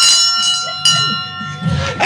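A bright ringing, bell-like tone with several pitches sounding together. It is re-struck about once a second and dies away about a second and a half in.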